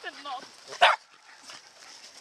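White spitz dog making short wavering whining calls, then one sharp, loud bark a little under a second in.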